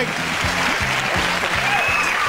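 Studio audience applauding over game-show theme music with a steady beat.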